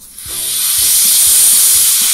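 Vent valve on the lid of a Paulaner Hefe-Weißbier party keg turned open: a loud, steady hiss of pressurised gas escaping, starting suddenly and swelling over the first second as the keg's pressure is let out.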